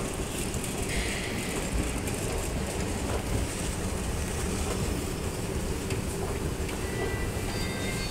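Hyundai S Series escalator running: a steady low hum and rumble from its moving steps and drive.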